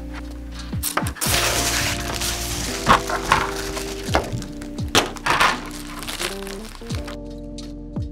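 Protective plastic film being peeled off a clear plastic picture-frame panel, crackling and crinkling in several bursts. Background music with sustained notes plays under it.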